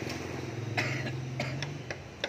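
Honda Wave 100's small single-cylinder four-stroke engine idling with a steady low hum that drops away near the end. A few short sharp noises sound over it, the loudest about a second in.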